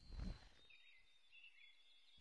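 Near silence, with a brief soft low sound just at the start.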